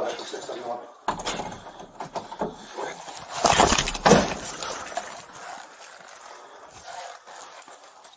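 Close rustling and scraping of uniform and gear against a body-worn camera's microphone as the officer moves, with a few sharp knocks. The rustling is loudest about halfway through and then fades.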